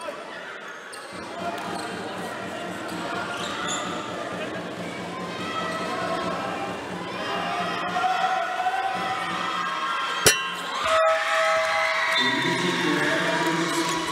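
Basketball arena crowd noise: many overlapping voices chattering and calling out across a large hall, with one sharp knock about ten seconds in. The crowd voices get louder and fuller near the end as fans cheer.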